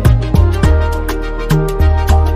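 Afrobeat instrumental: a steady drum beat with regular hits several times a second over a deep, moving bass line and held melodic notes.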